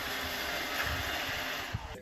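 An iRobot Roomba robot vacuum running steadily on a tile floor, its motor and brushes making an even whirr, with a brief click near the end.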